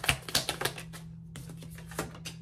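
A deck of tarot cards being shuffled by hand: a quick run of sharp card clicks in the first half second or so, then a few scattered clicks.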